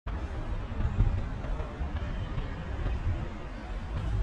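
Outdoor city street ambience: an uneven low rumble with faint, indistinct voices of passers-by.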